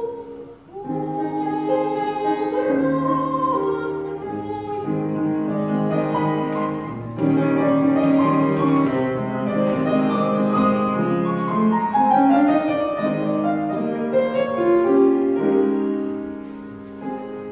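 A young girl singing in classical (academic) style with grand piano accompaniment. The sung line has vibrato over sustained piano chords, with a brief breath pause near the start and a louder passage from about halfway.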